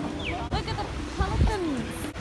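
Nearby people talking, with short bleat-like voiced calls and a brief low rumble on the microphone about halfway through.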